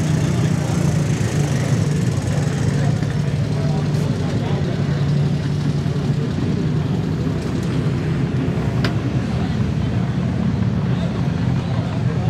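A vehicle engine idling steadily, a low even hum with no revving.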